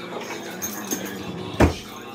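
A grey metal cabinet drawer on metal slides pushed shut: a couple of light clicks, then one loud bang as it closes about one and a half seconds in.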